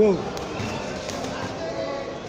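Boxing gloves landing punches on the coach's gloves, dull thuds.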